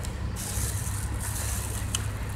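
Street traffic outdoors: a steady low rumble with a passing hiss in the first second, and one click near the end.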